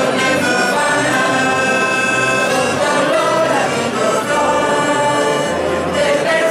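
A mixed choir of adults and children singing a traditional Catalan caramelles song in unison, accompanied by accordion, acoustic guitar and saxophone.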